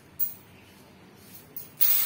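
Metal coins clinking as they are handled in a heap: one short clink just after the start, a quiet stretch, then a louder rattle of coins shifting and jingling near the end.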